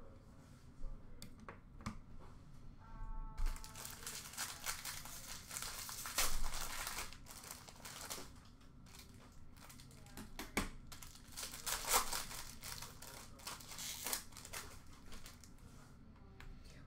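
Plastic wrapper of a trading-card pack crinkling and tearing as it is opened by hand. The crackling starts about three seconds in and carries on irregularly, with sharp clicks of cards and packaging being handled.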